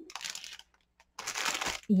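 Clear plastic bag crinkling as rolls of seam binding are handled inside it, in two short spells with a pause between.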